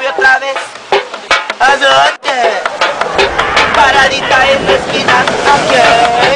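A street musician singing while beating a fast rhythm with a stick on tin cans used as a drum; sharp, tinny can strikes run under the voice.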